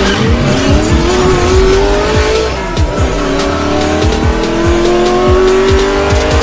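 A car engine revving up under electronic music with a regular beat. The engine's pitch climbs, drops at a gear change about three seconds in, then climbs again.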